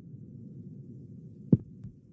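Broadcast transition sound effect: a low, steady rumble with one deep thump about one and a half seconds in, followed by a fainter one.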